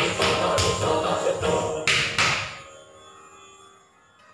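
Indian classical dance accompaniment for Kathak, with sharp percussion strokes about three a second that close on two hard strokes about two seconds in, then die away to a low hush.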